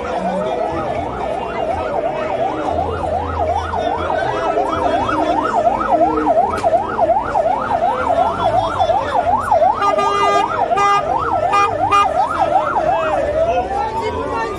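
Electronic vehicle siren in fast yelp mode, sweeping up and down about three times a second, changing to a slower rise-and-fall wail near the end. A run of short repeated beeps overlaps it about ten to twelve seconds in.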